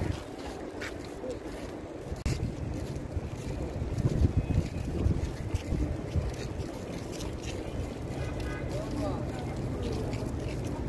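Wind buffeting the microphone outdoors, a gusty low rumble that swells about four seconds in, with faint voices of passers-by underneath.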